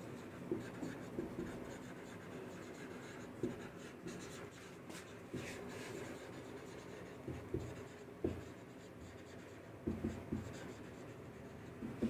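A marker pen writing on a whiteboard: faint, short strokes with brief pauses between them as a sentence is written out.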